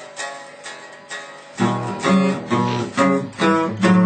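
Electric guitar played: a few quiet picked notes, then from about a second and a half in a louder rhythmic chord riff at about two strums a second.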